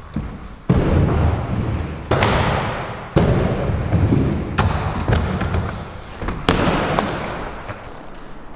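Inline skate wheels rolling on a concrete floor, with about five hard thuds, each followed by a rolling rumble that fades.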